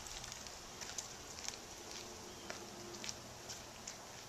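A man's footsteps on a driveway strewn with dry leaves: faint, irregular crunches and scuffs about every half second to a second as he walks away.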